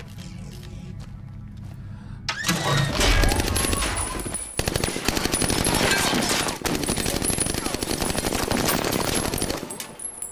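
A low steady film-score drone, then from about two seconds in long loud runs of rapid automatic gunfire. The firing breaks off briefly twice and fades just before the end.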